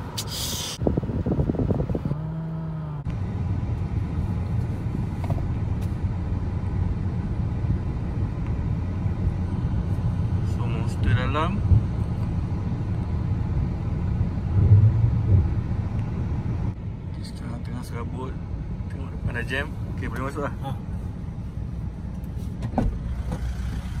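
Car engine idling, heard inside the cabin as a steady low rumble, with a few short stretches of voices.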